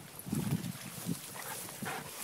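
A dog vocalizing faintly with a low, short sound about half a second in, followed by a few briefer, fainter sounds.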